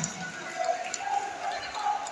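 Sports-hall ambience in a large echoing hall: faint distant voices, with a few soft thuds.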